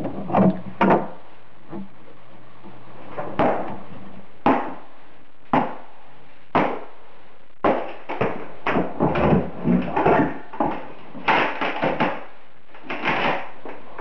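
Wooden wall shelving being knocked apart with a hand tool during kitchen demolition. Single hard knocks come about a second apart, then a fast run of blows and breaking wood follows in the second half.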